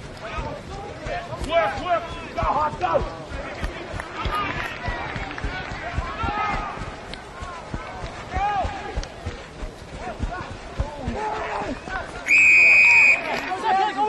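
Rugby referee's whistle blown once near the end, one steady high blast just under a second long, the loudest sound here. Before it, players and spectators shout across the field, with low thuds of wind buffeting the microphone.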